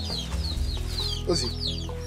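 Chickens clucking, with one short call about a second and a half in, over a steady background music bed.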